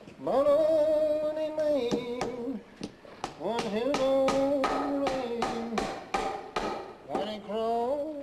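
A man singing long, drawn-out held notes. In the middle, a hammer knocks on nails in a steady run of about a dozen strokes, three to four a second, while the singing goes on.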